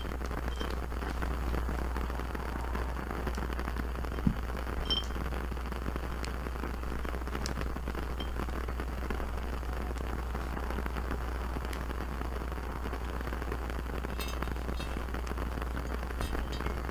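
Small glass jar being handled: a clink with a brief ring about five seconds in, a soft knock just before it, and a few light ticks near the end, over a steady faint crackling hiss.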